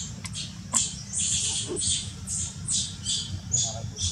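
Infant macaque giving a run of short, high-pitched squeaks, about two or three a second, over a steady low background rumble.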